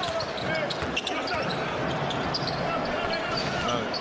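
A basketball being dribbled on a hardwood court against the steady noise of an arena crowd.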